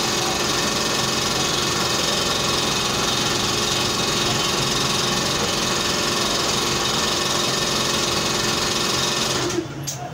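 A small electric motor-driven machine running with a steady hum and hiss, switched off abruptly near the end.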